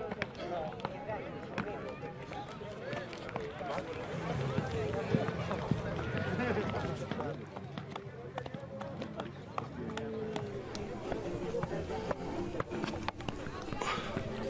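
Several people talking indistinctly at once, mixed with scattered light taps and scrapes of hand tools working packed sand.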